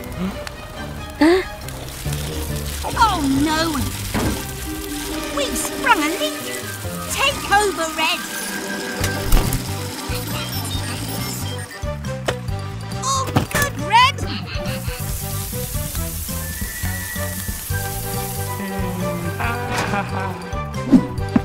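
Cartoon background music with wordless character vocal sounds that slide up and down in pitch, and a high hiss of water spray from a fire hose for about four seconds in the second half.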